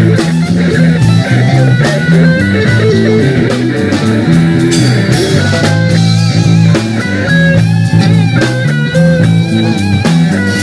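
Electric guitar solo through an amplifier, with bent and wavering lead notes, over a repeating bass riff and drums.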